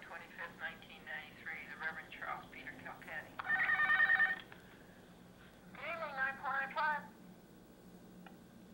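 Playback of a recorded telephone call: a voice heard over a narrow phone line, not clear enough to make out. Partway through, a steady pitched tone holds for about a second, and then the voice returns briefly.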